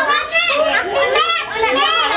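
Several young children talking and calling out over one another in high voices.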